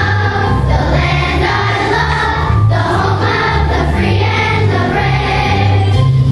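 Children's choir singing a song over an instrumental accompaniment with a prominent bass line.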